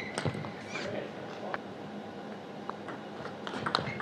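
Table tennis rally: the celluloid ball clicks off the rubber-faced bats and the table top in a string of short, sharp taps at uneven intervals.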